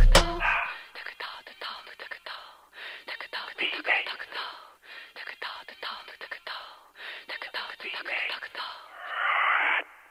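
The hip-hop beat and bass cut off about half a second in. What is left is a thin, filtered voice sample, like speech over a radio or telephone, in four short phrases with gaps between them. A louder, noisier burst comes near the end and then cuts off.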